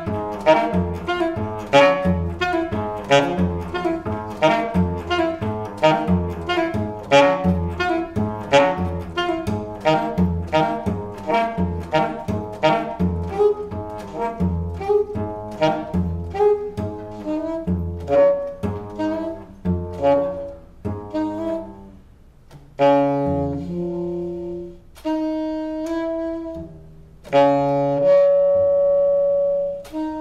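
Alto saxophone and cello improvising together. For most of the passage they play a fast, regular pulse of short repeated notes with a heavy low part. About two-thirds of the way in this gives way to long held saxophone tones, the last one loud and sustained.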